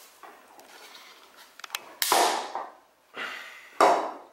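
A 3D-printed PLA Plus part being bent with pliers: small creaks and clicks, then a loud sharp crack about two seconds in as a ring of the plastic snaps off, and another sharp crack just before the end. This is the well-tuned print, which takes more effort to break and shears across several layer lines rather than splitting along one.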